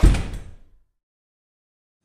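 A single heavy, low thud that dies away over about half a second, followed by dead silence.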